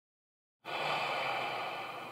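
A person's long, slow breath out through the mouth, starting a little over half a second in and gradually tapering off: a deep exhale, like a sigh, taken as a breathing exercise.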